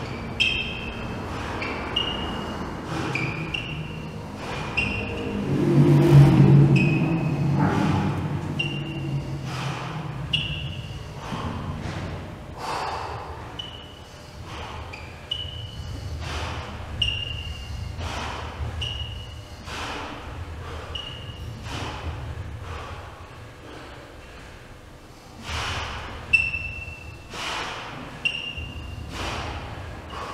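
Heavy 500 kg sled dragged across a concrete floor in repeated short pulls, about one a second, each with a brief high squeal, with hard breathing from the puller. A louder, deeper stretch of sound comes about six seconds in.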